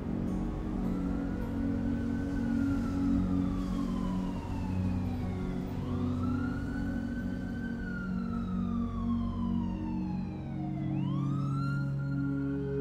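A siren wailing: its pitch rises quickly and then falls slowly, three times about five seconds apart. Under it is a low, steady ambient music drone.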